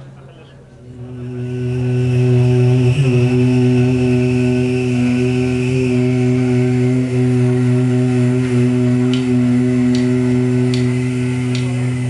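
A band's sustained droning note, one steady pitch with overtones, swelling up over the first two seconds and then held loud. Four light ticks come near the end.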